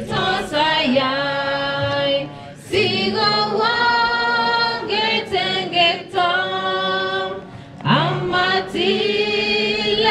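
A mixed choir singing a hymn unaccompanied, in long held notes, with short breaks between phrases about two and a half and seven and a half seconds in.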